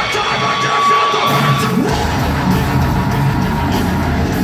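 Live heavy metal band playing loud in a concert hall. For the first second and a half or so the drums and bass thin out under a single held note, then the full band comes back in about two seconds in.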